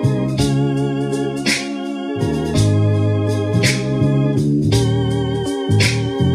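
Electronic keyboard set to an organ voice, playing held chords over bass notes that change every couple of seconds, as a slow gospel-song accompaniment.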